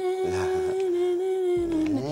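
A woman's voice holding one long sung note, wavering slightly at first and sliding down in pitch just before it stops near the end.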